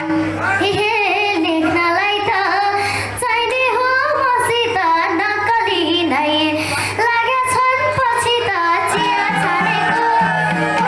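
A young girl singing a Nepali folk melody into a microphone over amplified instrumental accompaniment with a steady low drone.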